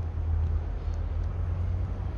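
Steady low outdoor rumble with a faint even hiss and no distinct events: general background noise, of the kind made by distant traffic.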